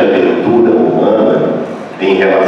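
Only speech: a man lecturing in Portuguese into a handheld microphone, his voice carried over the hall's sound system.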